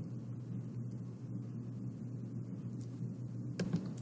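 Quiet room tone with a steady low hum, and a faint short sound near the end just before speech resumes.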